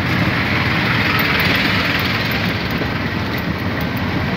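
Steady engine and road noise heard from an open auto-rickshaw moving through traffic, with a bus passing close alongside. The noise swells a little in the first couple of seconds.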